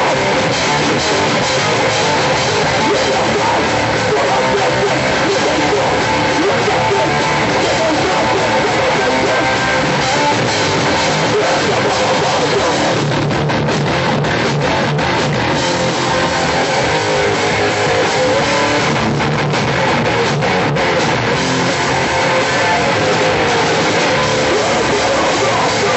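Hardcore band playing live at full volume: distorted electric guitars and a drum kit driving a fast, dense song without a break.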